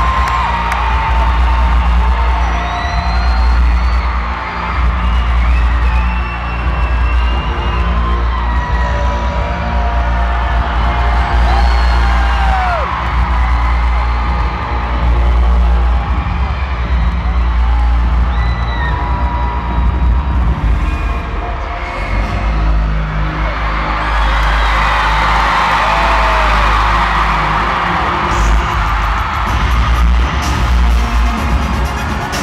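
An arena concert crowd screaming and cheering over a loud, deep, droning bass from the PA as the show's intro music plays. High screams rise and fall throughout, and the cheering swells about three-quarters of the way through.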